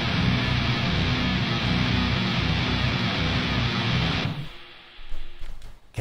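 Black and doom metal recording with heavy distorted electric guitars and drums, ending abruptly about four seconds in.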